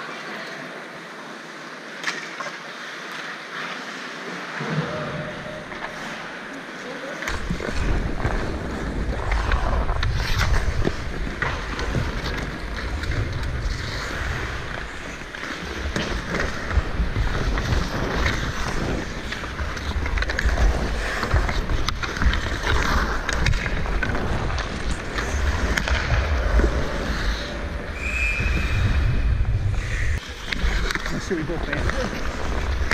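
Ice hockey rink sounds: skates scraping and carving on the ice, with scattered clacks of sticks and puck. From about seven seconds in, a heavy low rumble of wind on the microphone of a camera carried by a skater.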